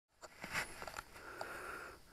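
Faint rustling with a few light clicks and taps.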